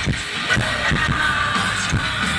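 Live metal band playing loud through a festival PA, heard from the crowd: distorted electric guitars and bass over a steady, pounding drum beat.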